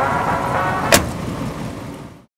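A car door shutting once with a sharp slam about a second in, over a steady outdoor noise that fades away near the end.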